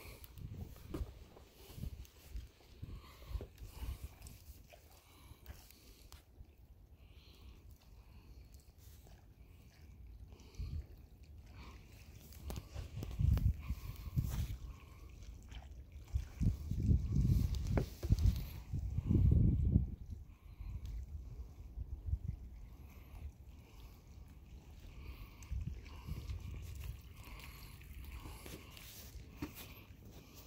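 Wind buffeting the microphone in uneven low rumbles that swell and fade, strongest in gusts a little past the middle.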